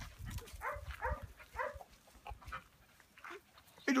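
Beagle puppies yipping: a few short, gliding yelps in the first two seconds, then a fainter one later, with a man's voice starting just at the end.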